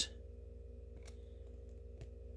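Steady low hum in a quiet room, with a single faint click about a second in as trading cards are moved between the hands.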